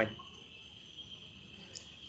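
A pause in a man's speech, filled by a faint, steady, high-pitched background drone. The last syllable of a word is heard at the very start.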